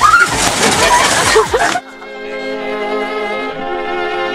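A loud, noisy stretch with voices for under two seconds, then a sudden cut to string music: a violin holding sustained notes over lower strings.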